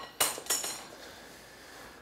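Two sharp metallic hits about a third of a second apart, ringing out brightly and fading over about a second.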